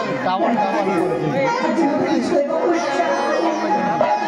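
Several voices talking over one another, over steady background music with held tones.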